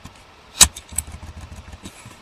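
Clicks from a computer mouse. There is one loud sharp click about half a second in and a softer one at about one second, followed by a few faint low knocks.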